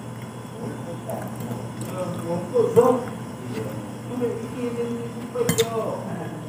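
A spoon clinks against a plate about five and a half seconds in as food is scooped up, under faint talking.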